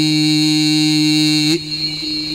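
Khassida chanting: one long, steady held note at the end of a verse. It drops off suddenly about one and a half seconds in, leaving a fainter held tone.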